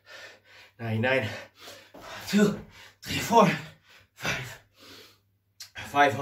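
A man's hard, voiced gasping breaths during burpees, about one a second.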